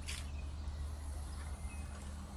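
Quiet outdoor background: a steady low rumble with a single faint click just after the start and a few faint, short high chirps.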